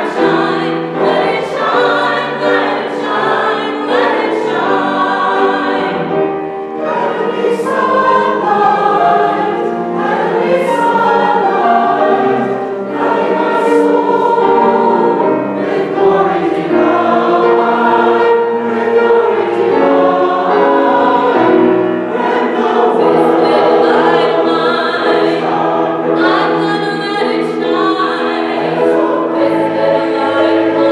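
Mixed choir of men's and women's voices singing, with many sustained notes moving together.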